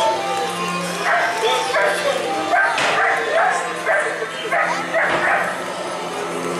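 A dog barking repeatedly, about twice a second, over steady background music from the dark ride's soundtrack.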